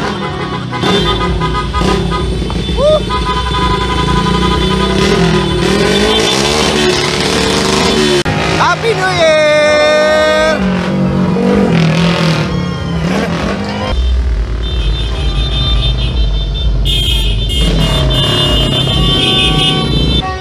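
Loud street noise from a passing motorcade: vehicle engines running and horns held in long blasts, mixed with people shouting and music.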